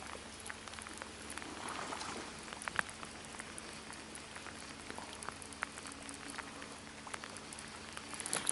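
Rain falling on the water surface: a steady soft hiss dotted with small scattered drop ticks.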